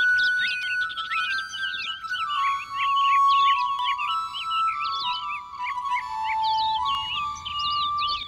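Background music: a slow, held melody line that steps gradually down in pitch, with many quick bird chirps over it.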